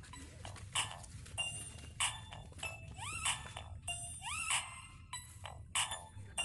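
A series of short animal cries, each rising quickly in pitch, bunched in the middle few seconds, among sharp irregular clicks.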